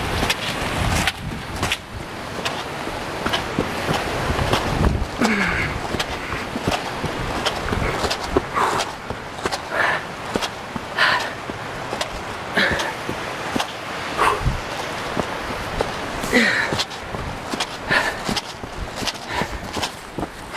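Running footsteps scrambling up a rocky, leaf-strewn trail, with irregular knocks and rubs of a handheld camera jolting at each stride. Short panting breaths cut in every second or two.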